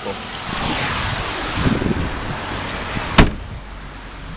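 Movement and a rushing hiss as a person gets out of a car, then a car door shut with one loud thump about three seconds in.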